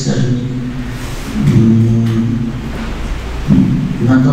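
A man's voice speaking in a large room, with a long drawn-out held sound in the middle, like a hesitation between words.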